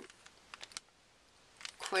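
Clear plastic packet of paper die-cuts being handled: a few light crinkly clicks about half a second in, and more just before speech resumes near the end.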